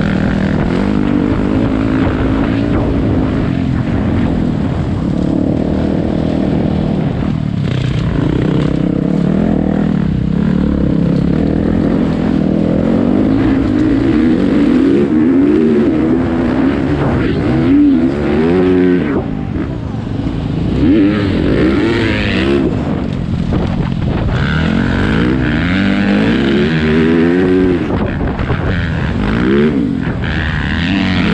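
Single-cylinder four-stroke dirt bike engine, a Yamaha YZ450F, under way on a gravel trail, its revs rising and falling over and over as the rider works the throttle.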